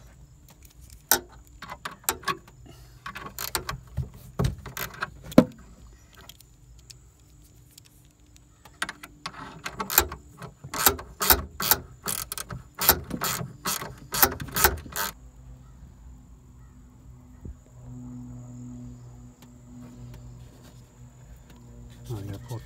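Ratchet wrench clicking in short strokes as a nut is worked off the ground-wire terminal of a car's power antenna. There are scattered clicks first, then a busier run of quick clicks through the middle. A low steady hum follows near the end.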